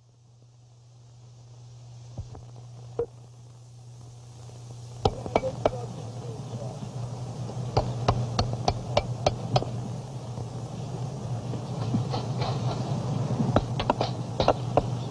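Hammer blows on a metal stake being driven into the ground. The sharp strikes come in irregular runs, at times about three a second, over a steady low hum.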